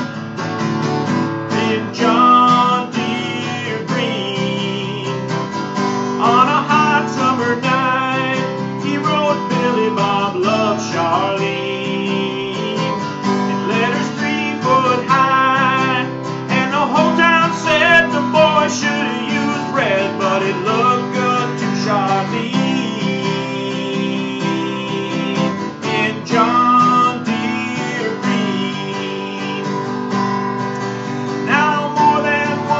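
Acoustic guitar, a Taylor 714ce, strummed steadily in an instrumental break of a country song, chords rung out with a regular strumming rhythm and no voice.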